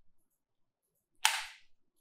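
Near silence, broken a little over a second in by a short, sharp intake of breath: one brief hiss that fades within half a second, just before the next sentence of speech.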